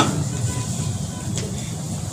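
Low, steady background noise of a crowded room between spoken sentences, with a faint click about one and a half seconds in.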